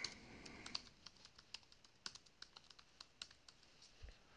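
Faint computer keyboard typing: a quick run of separate keystrokes.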